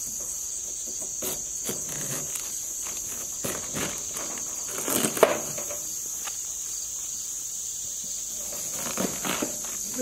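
Steady, high-pitched chorus of insects. A few soft taps and rubs come from a hand handling a whole watermelon, the sharpest about five seconds in.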